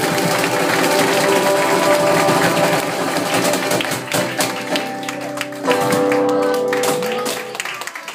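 Live band music ending a song: the players settle on a final chord that is held and then fades away near the end.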